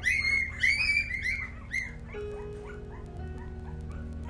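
Newborn puppies crying for their mother: a rapid run of short, high whimpers and squeals that slide down in pitch. They are loudest and thickest in the first two seconds, then thin out into fainter cries.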